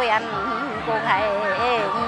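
A single voice in a Mường folk song (hát Mường), delivered softly in a wavering, speech-like line, quieter than the surrounding sung passages.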